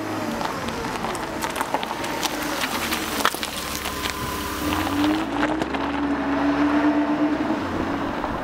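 A motor vehicle engine running, with a low rumble and scattered sharp clicks; a steady tone in it grows stronger about five seconds in.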